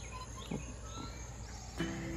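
Quiet outdoor ambience: scattered short bird chirps over a steady faint insect hum, with a small tap about half a second in.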